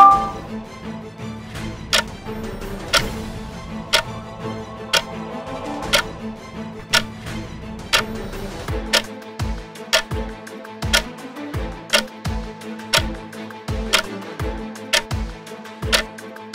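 Countdown-timer ticking over background music, about one tick a second. About nine seconds in, the pace doubles to about two ticks a second, each with a low thump. A short chime sounds right at the start.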